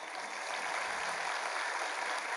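Studio audience applauding, a steady sound of many hands clapping.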